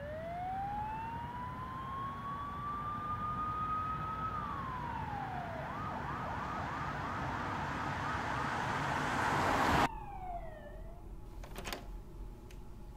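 Police-style siren: a slow wail that climbs in pitch for about four seconds and drops, then a rapid yelp of about three to four warbles a second, under a rising hiss that cuts off suddenly near the end. After the cut comes a short falling tone and a few clicks.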